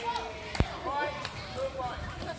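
Children's voices chattering and calling, with one sharp thump of a rugby ball a little over half a second in.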